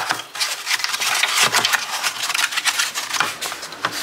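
Rustling and clicking of things being moved around in an open refrigerator: a cardboard egg carton and a plastic bag handled on the shelf, a rapid, irregular run of small knocks and crinkles.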